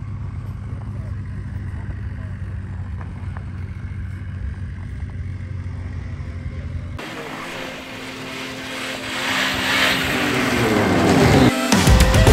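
Snowmobile engines: a low steady running sound for the first seven seconds, then, after a sudden change, a snowmobile running louder along the trail, its pitch falling near the end as it passes.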